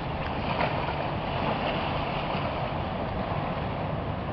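Steady wind buffeting the microphone, over water lapping at the shore.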